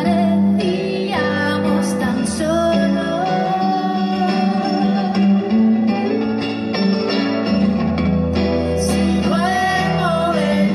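Live song: electric guitar playing under a woman singing long held notes.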